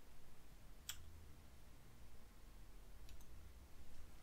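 Faint mouth clicks and lip smacks while beer is being tasted: one sharp click about a second in and a couple of fainter ones later, over quiet room tone with a low hum.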